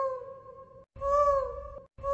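Cat-meow sound effect: the same single meow repeated about once a second, each call rising slightly then falling.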